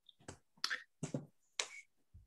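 Four short, sharp clicks, roughly half a second apart.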